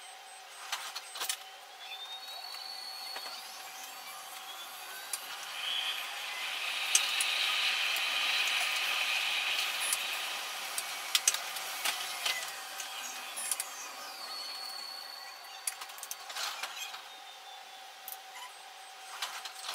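Oslo metro train running between two stations. Its motors whine upward in pitch as it pulls away and the running noise swells. Near the end the whine falls again as it slows, with scattered clicks and knocks from the running gear.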